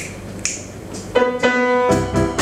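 Finger snaps about two a second counting off the tempo, then about a second in a grand piano comes in with a held chord as the tune begins.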